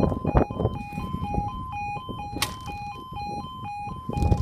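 Level crossing warning alarm sounding a two-tone warble, switching back and forth between a lower and a higher note about twice a second. Irregular knocks and a low rumble sit underneath it.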